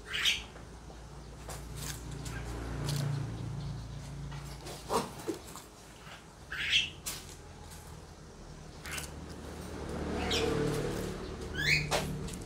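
A few short, sharp bird chirps: one right at the start, one past the middle and a couple near the end, over a low background hum.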